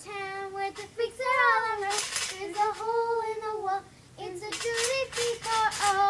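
A child singing a tune in held, gliding notes, with a few short hissy sounds between the phrases.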